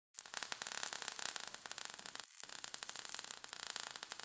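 Crackling static sound effect: dense irregular clicks over a high hiss, with a brief break a little past halfway.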